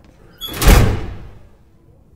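A heavy door slides and shuts with a loud, deep bang about half a second in, then dies away over about a second.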